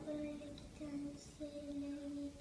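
A young child's voice softly singing three long, held notes, the last the longest.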